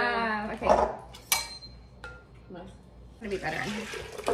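A drawn-out, wavering vocal exclamation that fades out about half a second in. It is followed by a few sharp clinks and knocks of kitchen utensils and bowls.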